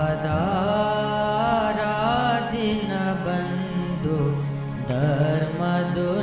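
A man singing a slow devotional chant (dhun) with long, gliding notes over a steady instrumental drone.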